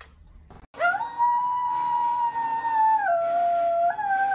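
A dog howling in response to video game music: one long, steady howl that starts about a second in and drops to a lower pitch near the end.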